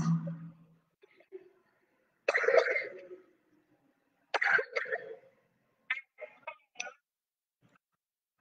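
A few faint, broken-up snatches of a voice, in three short bursts with silence between, the last one choppy and cut into brief pieces.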